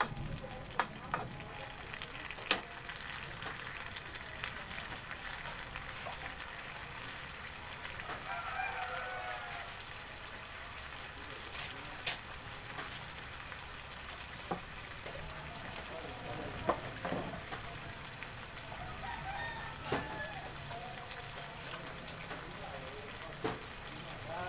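Sardines, tomato, onion and garlic sautéing in a wok, a steady sizzle, with a few sharp clanks of the metal spatula on the pan in the first couple of seconds. A few faint animal calls sound in the background.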